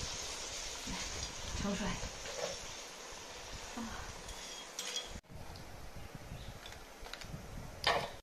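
Soft clinks of chopsticks and a stainless steel plate as cooked prawns are lifted out of a wok, over a faint hiss that drops away about five seconds in, with a sharper clink near the end.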